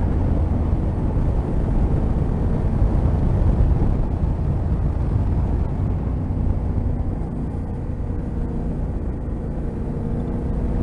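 A Yamaha Ténéré 700's parallel-twin engine running at road speed, with heavy wind rush over the camera mic. The sound eases slightly in the second half as the bike slows for a bend.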